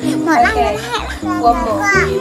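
Young children talking and calling out in high voices, their pitch rising and falling, over background music with a steady bass line.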